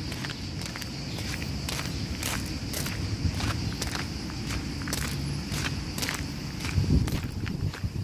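Footsteps crunching on a gravel path at a steady walking pace, about two to three steps a second, over a low steady rumble, with a louder low thump near the end.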